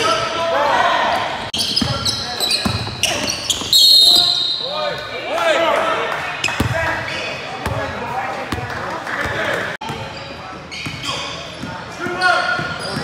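Live basketball game in a gym: a ball bouncing on the hardwood court, sneakers squeaking and voices echoing in the hall. About four seconds in there is a short, loud, high whistle blast.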